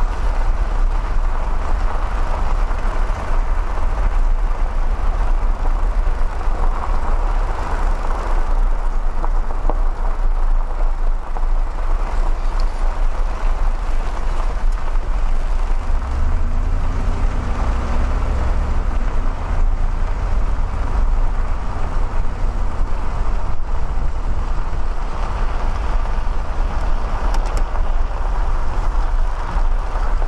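Steady road noise inside a moving car: a low engine drone and tyre noise. The low drone swells for a few seconds about halfway through.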